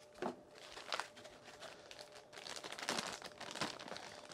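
Metallised anti-static bag crinkling as it is handled, in a few separate crackles at first and then more continuously near the end.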